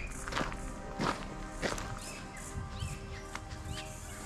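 Footsteps of a person walking over a gravel path, about one and a half steps a second.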